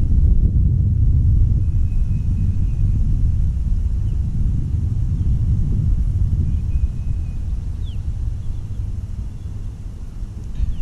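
Wind buffeting the action camera's microphone: a steady low rumble that eases somewhat near the end.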